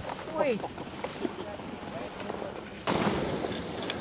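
Faint indistinct voices, then about three seconds in a sudden jump to steady wind noise buffeting the microphone in a snowstorm, louder than anything before it.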